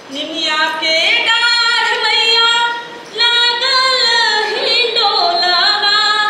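A woman singing a Bhojpuri folk-song melody unaccompanied, in long held, ornamented notes: two phrases with a short breath break about halfway through.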